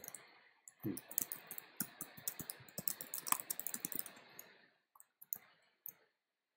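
Typing on a computer keyboard: a quick run of keystrokes from about a second in until about four and a half seconds, then a few separate key presses near the end.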